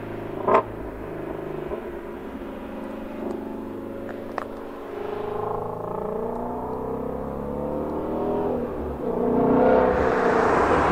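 Ford Shelby GT350's flat-plane-crank V8 approaching from a distance, its pitch rising as it accelerates and the sound growing louder near the end. A sharp click about half a second in.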